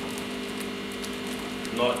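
Steady hum of aquarium equipment running in a fish room.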